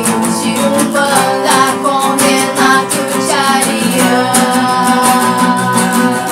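Two acoustic guitars strummed in a steady rhythm, with a woman's voice singing a melody in Portuguese over them.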